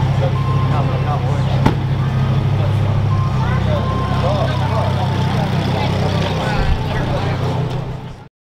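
A car engine idling steadily, a low even rumble that drops away about six and a half seconds in, with people chatting faintly behind it and a single sharp click early on.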